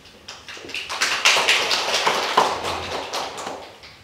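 A small audience applauding, with dense hand claps that build up about a second in and die away near the end.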